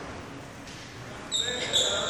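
Court shoes squeaking on a wooden sports-hall floor as a badminton player moves, the short high squeaks starting a little past halfway and sounding in a large, echoing hall.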